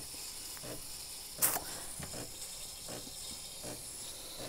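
Breville Barista Touch steam wand hissing steadily as it automatically froths milk in the pitcher, with one sharp click about a second and a half in.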